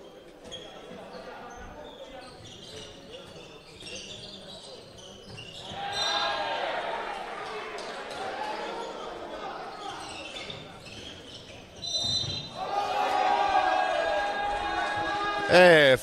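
Handball bouncing on a wooden sports-hall floor during play, with players' and spectators' shouting swelling about six seconds in and again near the end.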